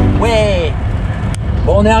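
A single falling cheer, 'hurra!', shouted over the steady low rumble of an open-top car driving along, with speech starting near the end.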